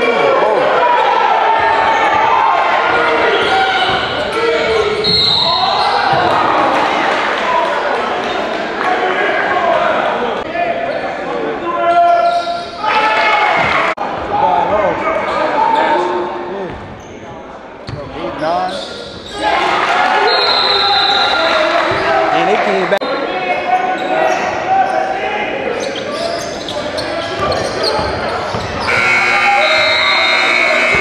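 A basketball bouncing on a gym's hardwood court during live play, with players' and spectators' shouts and chatter echoing around a large gymnasium.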